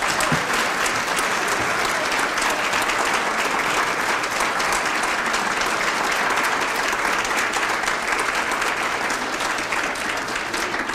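An audience applauding, many hands clapping in a dense, steady stream. The applause keeps going throughout.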